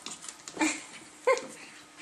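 Small dogs play-fighting, with two short vocal yelps about two-thirds of a second apart, the second a sharp, high, arching yip.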